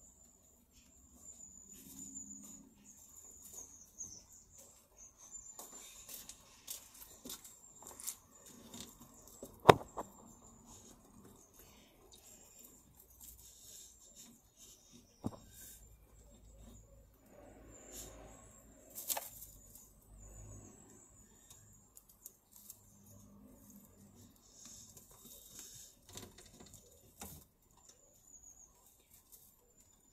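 Faint, scattered rustling and light clicks of rabbits moving about in straw bedding close to the microphone, with one sharper knock about ten seconds in and a couple of smaller knocks later.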